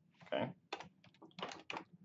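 Typing on a computer keyboard: several separate, irregularly spaced keystrokes.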